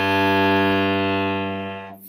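Cello's open G string bowed as one long note, the first note of a one-octave G major scale. It swells, then fades away near the end.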